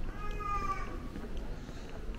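A short high-pitched cry, slightly falling in pitch and under a second long, heard over the steady low hum of a large hall.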